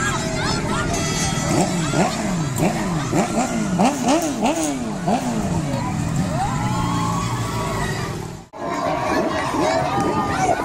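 A vehicle engine revved in repeated quick blips, its pitch rising and falling over and over for several seconds, over the voices and shouts of a crowd. The sound cuts out briefly near the end.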